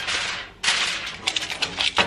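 Aluminum foil crinkling and crackling as it is pressed and folded over the rim of a sheet pan, in two spells with a brief pause about half a second in.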